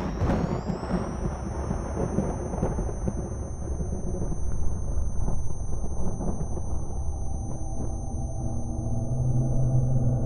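Cinematic intro soundtrack: a deep rumbling roar with a thin high whine that rises in the first second and then holds steady, settling into a low humming drone near the end.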